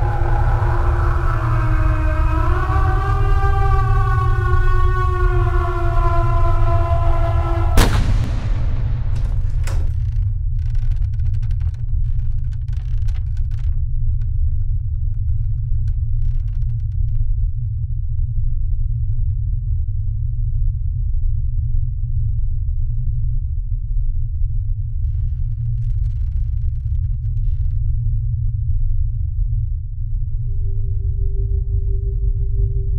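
Film sound-design drone: a deep, steady low rumble throughout. Over the first eight seconds several wavering tones swell on top of it, then cut off with one sharp hit.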